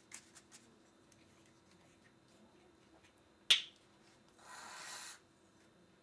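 Art materials handled on a tabletop: a few light clicks, one sharp tap about three and a half seconds in, then just under a second of rubbing or scraping.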